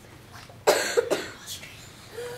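Two short coughs, about half a second apart, starting a little past halfway in.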